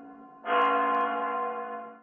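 Spasskaya Tower clock bell (the Kremlin chimes) striking midnight. The previous stroke dies away, a new stroke sounds about half a second in, and its ring fades by the end.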